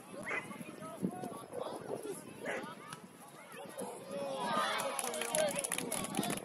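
Voices shouting and calling out on a youth football pitch, several at once and loudest near the end, with a few sharp knocks.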